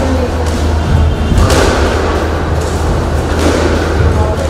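Squash rally: the ball is smacked by rackets and off the court walls, a sharp hit every second or two over a steady low hum.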